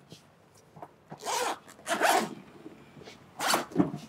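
Zipper of a padded Westcott carrying case being pulled open in three rasping strokes, about a second apart.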